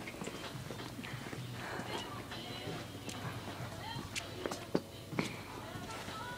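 Indistinct voices and chatter, no words clear, with a few sharp clicks or knocks about four to five seconds in.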